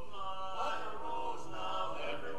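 Barbershop quartet of four men singing a cappella in close harmony, holding sustained chords with some sliding notes.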